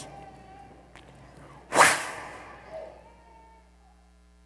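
A single loud, sharp whip-like crack about two seconds in, a mimicked lash of a scourge, echoing through the church for about a second before dying away.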